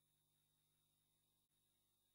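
Near silence: faint steady hiss and hum of the recording line.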